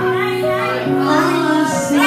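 Karaoke backing track playing through a loudspeaker, held notes over a beat, with a woman singing along into a microphone.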